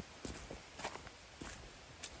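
Footsteps on a dirt bush trail littered with dry leaves and twigs, at a steady walking pace of about one step every half second or so.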